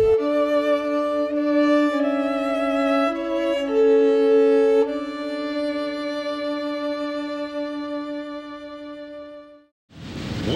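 Slow background music on violin, playing held notes two at a time with a slight waver. It ends on one long chord that fades away shortly before the end.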